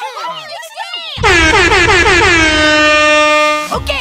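Handheld canned air horn blown in one long, loud, steady blast of about two and a half seconds. It starts about a second in and cuts off sharply near the end.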